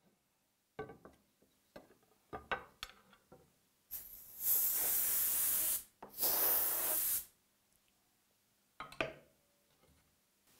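Compressed-air blow gun blowing off an aluminium gripper profile: two blasts of hiss, the first about four seconds in and lasting nearly two seconds, the second just after six seconds and lasting about one. Before them come a few short knocks.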